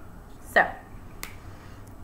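A single sharp click about a second in.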